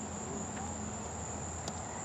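Insects trilling steadily, one continuous high-pitched tone over background hiss.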